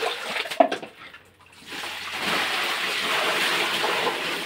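Water splashing in a basin, a short lull, then from about halfway a steady pour of water from a plastic bucket into a basin of laundry.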